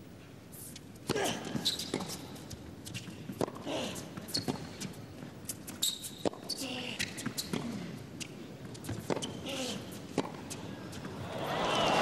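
A tennis rally on an indoor hard court: sharp racket strikes and ball bounces at irregular intervals, starting with the serve about a second in, with short squeaks from the players' shoes. Crowd applause swells near the end as the point is won.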